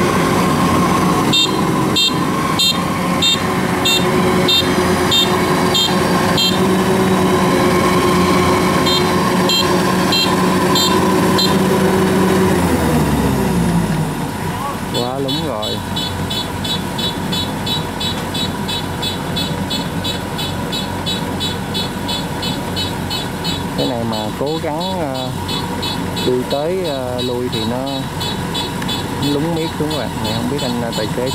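Kubota DC-93 combine harvester's diesel engine running hard as the tracked machine works in deep mud. About halfway through the engine winds down and keeps running at lower speed, with a fast, regular high ticking. People's voices come in near the end.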